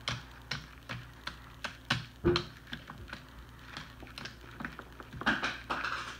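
Irregular light taps and clicks as hands press a plastic fidget spinner into Play-Doh and handle it on a table, growing denser near the end.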